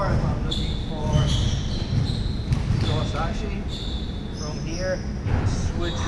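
Sports-hall background noise: indistinct voices, repeated dull thumps and short high squeaks, echoing in a large hall.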